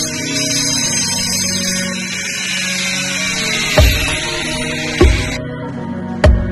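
Angle grinder cutting a ceramic floor tile: a loud, high-pitched whine that cuts off suddenly about five seconds in. Background music plays under it, with two heavy bass thumps in the second half.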